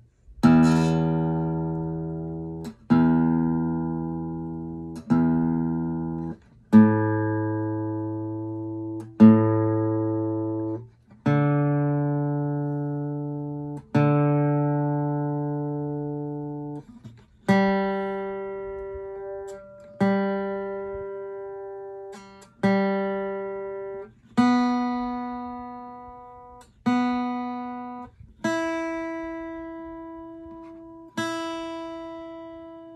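Acoustic guitar strings plucked one at a time for tuning, each note left to ring and fade before the next, about every two seconds. Two or three plucks per string, working up from the low E string through the A, D, G and B strings to the high E string.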